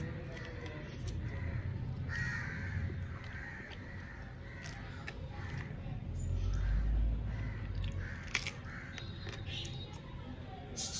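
Crows cawing several times in the background, with soft sounds of crab being bitten and sucked at close by.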